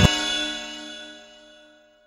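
The closing chime of an intro music jingle: one bell-like clang at the start that rings out and fades away over about a second and a half.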